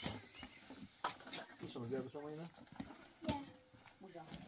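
A few quiet words, with two sharp clicks of dishes being handled as food is served onto plates on a metal tray.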